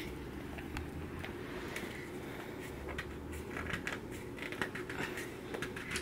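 Faint scattered clicks and light rubbing from handling, a few a second apart, over a low steady room hum.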